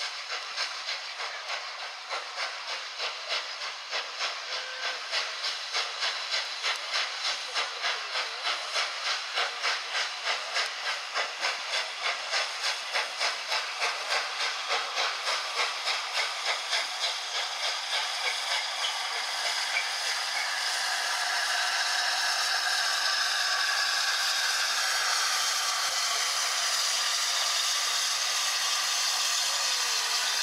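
Flying Scotsman, an LNER A3 Pacific steam locomotive with three cylinders, working steam as it pulls a train away, its exhaust beating at about two beats a second over a steam hiss. From about twenty seconds in the beats merge into a steadier, louder hiss and rumble as the engine passes close.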